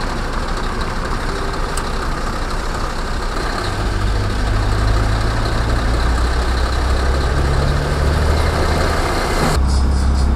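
Heavy recovery truck's diesel engine idling, its rumble growing louder and deeper about four seconds in, with a slight rise in pitch later on. The sound changes abruptly just before the end.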